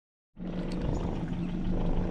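Yamaha outboard motor running steadily, a constant low hum over engine and water noise, starting about a third of a second in.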